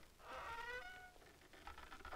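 A woman's high, drawn-out cry, a wordless vocal wail lasting well under a second, ending in a short higher note, then faint small clicks.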